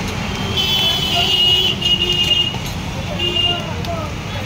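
Steady street traffic rumble and background chatter, with a vehicle horn sounding three times: one long blast, a shorter one, and a brief toot near the end.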